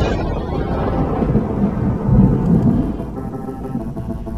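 Thunder with rain: a sudden crack that rolls into a long low rumble, loudest about two seconds in and easing off near the end. Soft music comes back in under it near the end.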